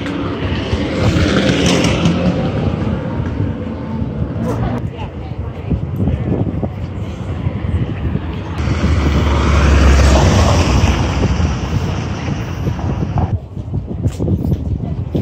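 Busy city-street ambience: background chatter of passers-by and traffic noise, with a vehicle's low rumble swelling and fading around the middle.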